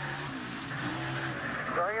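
NASCAR Cup stock car's V8 engine heard on board, its pitch shifting, with tires skidding as the car spins after being hit from behind.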